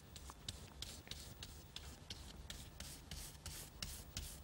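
Paintbrush loaded with white paint dabbing and brushing over a paper doily on paper, a faint scratchy stroke about four times a second.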